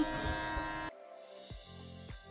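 Electric hair clippers with the guard off buzz steadily over background music, then stop abruptly about a second in, leaving a quieter low hum.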